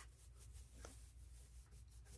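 Near silence: a hand faintly rubbing a sticker down onto a board, with one soft tap a little under a second in, over a low steady room hum.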